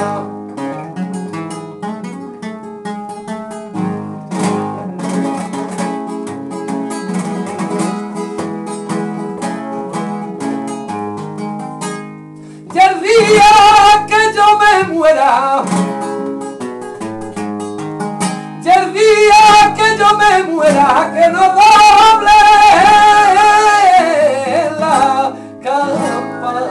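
Acoustic guitar played flamenco-style, a quick run of plucked notes on its own for about twelve seconds. Then a man's voice comes in much louder, singing long, drawn-out wavering notes over the guitar.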